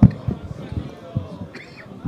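Low, indistinct voices of a gathering with soft thuds every half second or so, loudest at the very start. This is the audience responding to the call to recite salawat on Muhammad and his family.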